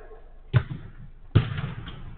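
Two sharp thuds of a football being struck, less than a second apart, the second louder and followed by a short echo.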